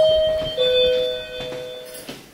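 Hotel room doorbell chime: two electronic notes, the higher first and a lower one about half a second later, both ringing on and slowly fading.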